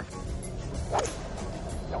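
A golf club striking a ball once, a short sharp crack about a second in, over background music.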